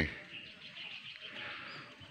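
Faint bird chirps over quiet outdoor background noise.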